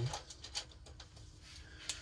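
A few faint, scattered clicks and light handling taps, the sharpest one near the end.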